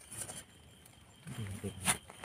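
Hands scraping and brushing loose soil in two short bursts, the second longer and louder near the end, with a brief low voice under it.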